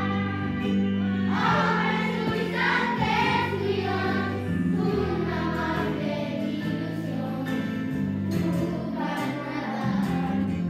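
A group of children singing a Christmas carol (nadala) in unison over an instrumental accompaniment with steady held low notes.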